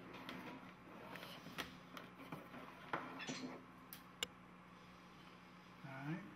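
Scattered light clicks and taps of equipment being handled close to the microphone, thinning out after about four seconds, over a faint steady low hum.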